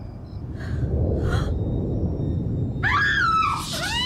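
A woman's high, muffled cries, rising and falling in pitch, begin about three seconds in with her mouth covered by hands, over a low rumbling background; two short breaths come earlier.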